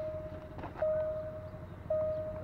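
Level-crossing warning signal sounding a steady tone that breaks off and repeats about once a second, over a low steady rumble.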